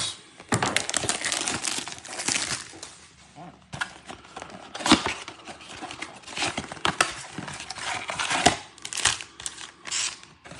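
Cardboard tearing and packaging crinkling as a 2022 Bowman baseball blaster box is torn open by hand and its foil packs are slid out. A run of irregular rustles and rips, the sharpest about five seconds in and again near the end.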